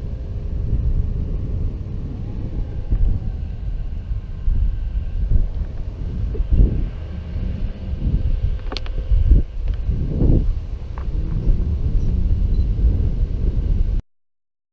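Wind buffeting the helmet-mounted camera, with the low rumble of bicycle tyres rolling over grass and gravel. A few sharp knocks and rattles from the bike come in the second half.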